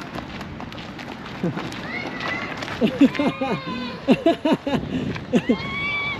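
Running footsteps on a dirt and gravel path, with a string of short, breathy voice sounds from the runners in the second half.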